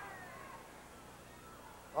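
Faint crowd noise in a basketball arena, with a few high squeaks from basketball shoes on the hardwood court in the first second.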